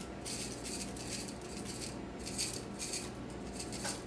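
Candy sprinkles being scattered over muffin batter in a muffin tin: faint, on-and-off light rattling over a steady low hum.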